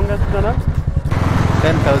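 Royal Enfield Classic 350 single-cylinder engine running at low road speed, a steady low pulsing; the sound changes about a second in, with more rushing noise over the engine.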